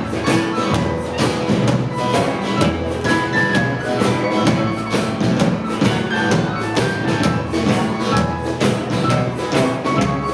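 A live band playing with a steady beat: upright double bass, acoustic and electric guitars and a drum kit.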